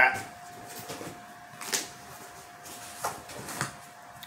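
Handling noises from a package of vinyl records being picked up and opened: a few separate soft knocks and rustles, over a faint steady tone.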